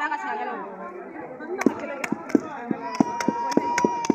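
Wooden pestles pounding in a wooden mortar, several women striking in quick alternation at about four thuds a second. The pounding pauses briefly near the start and picks up again about one and a half seconds in. Women's voices chatter over it.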